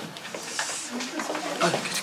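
Indistinct chatter of several students' voices in a classroom.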